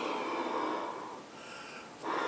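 Trombone blown into a Softone practice mute stretched over its bell: a heavily muffled, breathy rush lasting about a second and fading. This is the blowing that makes the mute form a seal over the bell.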